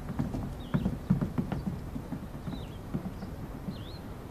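Footsteps of several people walking away across a hard floor: irregular knocks, busiest in the first second and a half, then thinning out.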